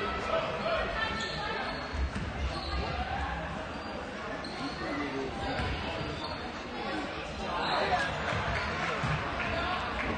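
A basketball bouncing on a hardwood court in a large, echoing gym, mixed with voices from players and the crowd. The voices get louder about eight seconds in.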